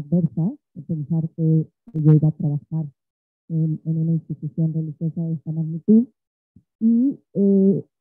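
Low male voices chanting syllable by syllable on one steady reciting tone, in short phrases with brief pauses between them. The pitch rises at the ends of the last phrases.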